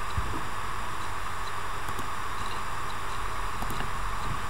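Steady hiss of background noise on the recording, with a few faint ticks and no speech.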